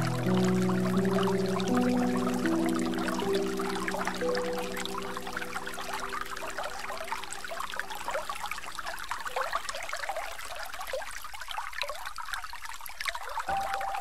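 Slow relaxation music of soft held low notes, changing every second or two and fading out over the first half, over continuous trickling, splashing running water. The water carries on alone for a few seconds until a new musical phrase begins at the very end.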